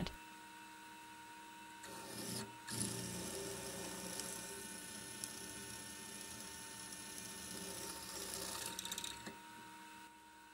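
Mini mill running a drill bit into a metal plate. There is a faint steady whine throughout, and the louder cutting sound runs from about two seconds in until about nine seconds in. The hole overlaps its neighbour too much, so the bit vibrates and deflects off course.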